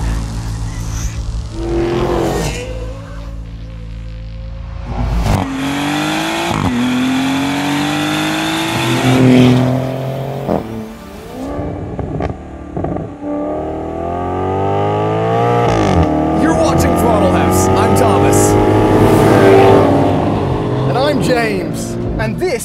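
Maserati GranTurismo engine accelerating hard through the gears, its pitch climbing and then dropping back at each upshift, several times over.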